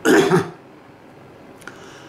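A man clearing his throat once, a short rough burst about half a second long.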